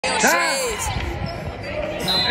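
Basketball game sound in a gym: a ball bouncing on the hardwood court, with voices calling out.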